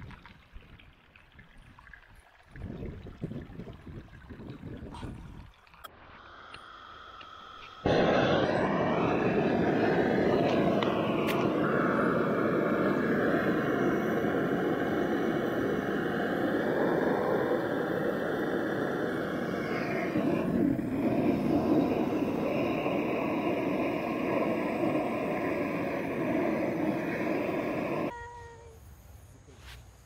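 Water trickling over river stones, then a butane canister torch firing a steady, loud jet of flame for about twenty seconds into campfire kindling. It starts and cuts off abruptly.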